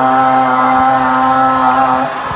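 Crowd singing along, holding one long steady note at the end of a sung line; the note cuts off at the end.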